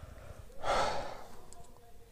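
A man's single audible breath, a short sigh lasting about half a second, near the middle.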